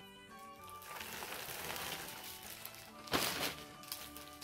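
Clear plastic garment bag rustling and crinkling as it is handled, with a sharp, loud crinkle about three seconds in, over steady background music.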